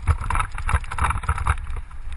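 Wind rushing over a bike-mounted camera's microphone, with a constant low rumble and rapid knocks and rattles as a mountain bike runs fast down a wet, rutted dirt trail.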